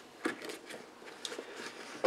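Faint rustling and a few light clicks as a small thermal camera and its USB cable are lifted out of a zip-up carrying case.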